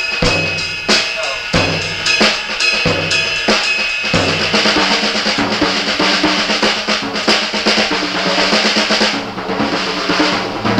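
Drum kit demonstrating metric modulation. It starts with an even pulse of heavy accented strokes, about one every two-thirds of a second, under a ringing cymbal. About four seconds in it moves into a dense, busier groove of drums and cymbals.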